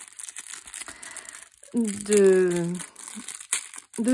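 A clear plastic packet crinkling as hands handle and squeeze it to open it, with small crackles and clicks.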